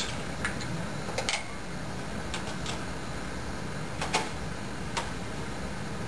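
Scattered light clicks and knocks of a DSLR with a large telephoto lens being handled and clamped by its lens plate onto a tripod ball head, over a steady room hum.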